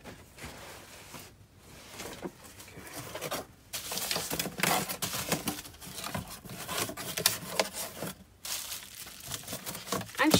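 Small cardboard shipping boxes being handled and tipped about with packing material: irregular rustling, scraping and light knocks, busier and louder from a few seconds in.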